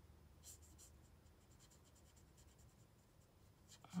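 Faint scratching of an alcohol-ink marker nib stroking across card, with a short cluster of firmer strokes about half a second in, over a low room hum.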